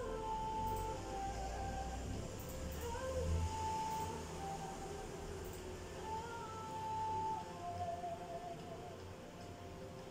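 A woman sings long held notes over a backing track, sliding up into each note, in a slow medley performance.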